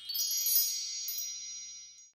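Sparkly chime sound effect: a cluster of high, bell-like chime tones that rings brightest early on and then slowly fades.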